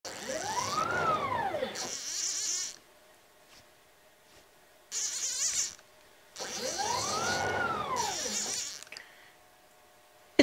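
Stepper motors of a CNC router driving an axis as the handwheel jogs it: a whine that rises in pitch and falls again, heard twice, each followed by a short high hiss, with another short hiss about halfway. The axis is jogging in the one direction it will move; it will not move in the other.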